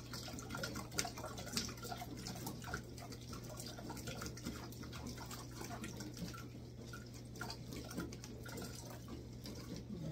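A metal spoon scraping and pressing blended carrot and onion purée through a plastic mesh strainer, with many small irregular clicks, while the strained juice drips into a metal pot below.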